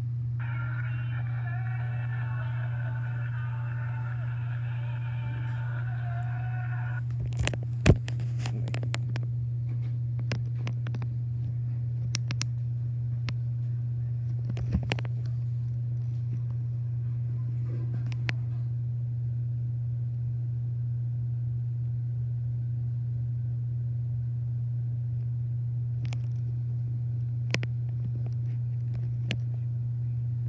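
The show's audio plays through laptop speakers for about the first seven seconds, over a steady low hum. Then come handling knocks and clicks as the phone and the laptop are handled, the loudest two close together about eight seconds in.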